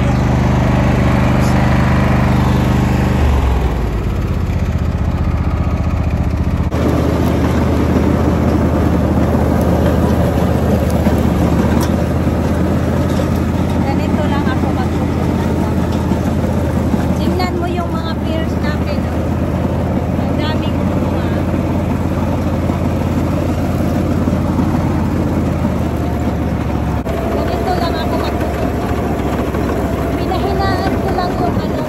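Husqvarna riding lawn mower engine running steadily while cutting long grass, its note dropping a little about three seconds in and shifting again about seven seconds in.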